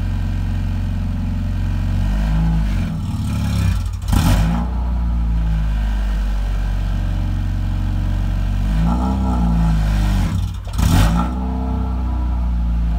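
Mazda Miata's four-cylinder engine running at idle, revved up and back down twice, each rev ending in a short, loud, sharp burst of noise.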